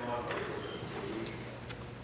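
Indistinct murmur and heckling of several voices across a legislative chamber, with a faint click near the end.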